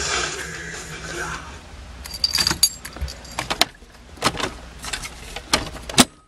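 Hard-rock music from a car stereo being turned down and fading out over the first second or so. Then come scattered small clicks and rattles of handling, over a low steady hum.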